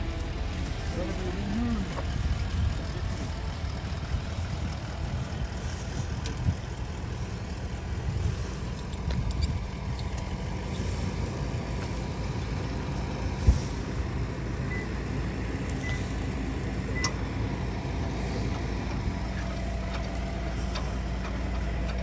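A four-wheel-drive vehicle's engine idling steadily, with one sharp knock a little past halfway.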